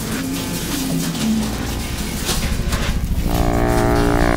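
Abstract electronic sound design: a dense crackling, rumbling noise texture with a few short low tones, then a steady buzzing drone comes in near the end.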